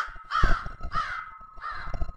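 Crows cawing: a steady run of short, harsh caws, nearly two a second.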